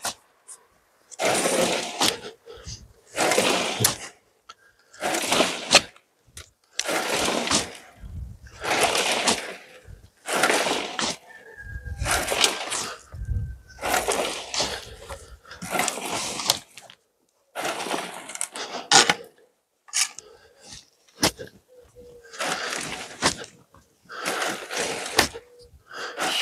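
Shovelfuls of clay-heavy soil being thrown onto a homemade angled soil sieve and sliding through it. Each is a gritty rush about a second long, repeating steadily roughly every two seconds.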